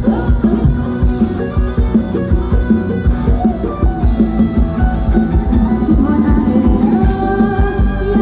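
Amplified band playing upbeat Thai ramwong dance music, with a steady drum-kit beat under melody instruments and a singing voice.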